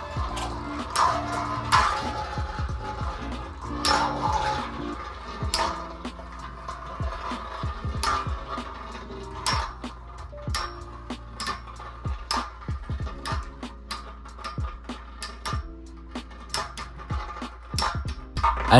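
Storm Pegasus and Burn Phoenix Beyblade tops spinning and clashing on a hard dish-shaped stadium, with irregular metallic clicks and clacks that come faster in the second half. Background music plays under them.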